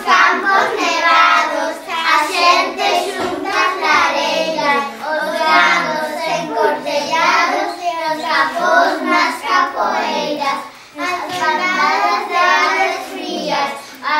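A group of children singing a poem together in unison, with a brief pause about eleven seconds in.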